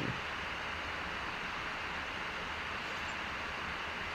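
Steady background hiss with a faint low hum: the recording's noise floor during a pause in the voiceover, with nothing else sounding.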